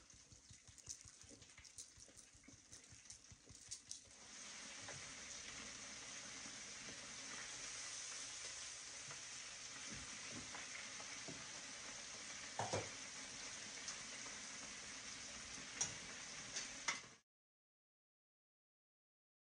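Breaded cod frying in an electric deep fryer at 350 degrees: a steady sizzle of bubbling oil that begins about four seconds in, after a few faint taps. A couple of small knocks come near the end, and the sizzle cuts off suddenly just before the end.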